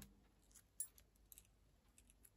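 Near silence, with a few faint clicks from paper flowers and card being handled and pressed into place, the clearest a little under a second in.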